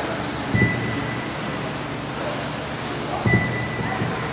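Electric 1/10-scale rubber-tire touring cars running on an indoor carpet track: a steady whir of motors and tyres, with two soft knocks and a brief high tone twice.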